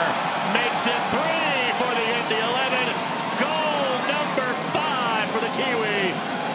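Home crowd celebrating a goal, with a high voice in long, sweeping rises and falls carrying over the crowd noise.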